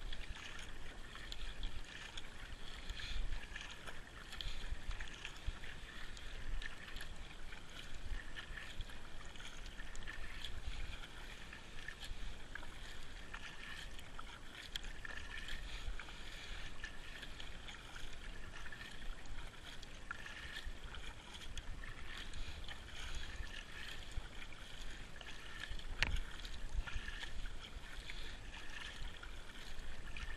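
Kayak paddle strokes on calm, smooth water: the blade dipping in and splashing, with water dripping and trickling off it between strokes.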